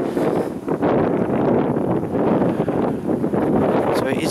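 Wind buffeting the microphone: a steady, rough rushing noise with no other sound standing out.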